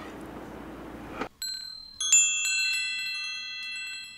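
Steady room hum cuts out after about a second, then a shimmering wind-chime sound effect: a few high ringing notes, then at about two seconds a loud cluster of chime tones that rings on and slowly fades, cueing a dream.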